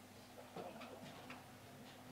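Near-silent room tone with a handful of faint, irregular clicks and ticks.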